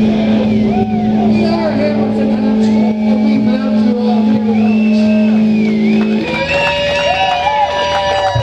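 Live rock band at the close of a song: a loud, sustained low guitar-and-amplifier drone with high wavering, wailing tones over it. About six seconds in, the low drone stops and a higher held tone takes over.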